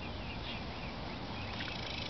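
Steady outdoor background hiss and low rumble, with a few faint, short high-pitched chirps scattered through it.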